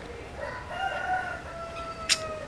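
A rooster crowing once in the background, one long drawn-out call starting about half a second in.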